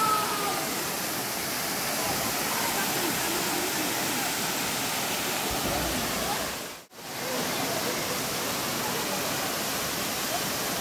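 Waterfall: a steady rush of falling water, cutting out for a moment just before seven seconds in and then coming back.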